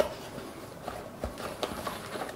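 Small cardboard box being handled and opened by hand: a few light taps and rustles of the cardboard flaps and the contents inside.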